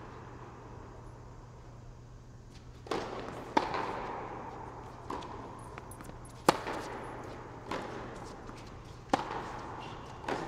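A tennis rally on an indoor hard court: racket strikes and ball bounces about every one and a half seconds, each ringing in the hall, over a steady low hum. The rally starts about three seconds in, and the two loudest hits come a little before the halfway point and again after it.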